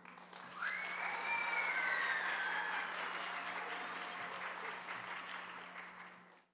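Audience applauding, starting about half a second in and fading out near the end, with a long high-pitched whoop that rises and then slowly falls.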